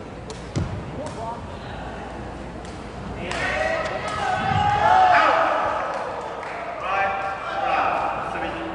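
Sepak takraw ball kicked on a serve with a sharp thud about half a second in, then kicked again during the rally a little past the middle. Players and spectators shout from about three seconds on, loudest around the spike.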